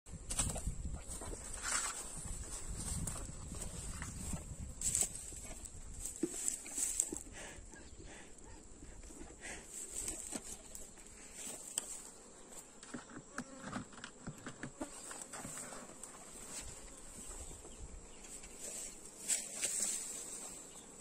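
Honeybees buzzing at an open hive, with scattered knocks and scrapes as the hive's metal-covered lid is handled and lifted off. A steady high-pitched whine runs under it all.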